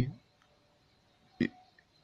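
A man's reading voice trails off, then a pause broken by a single short, sharp noise from his mouth or throat about one and a half seconds in.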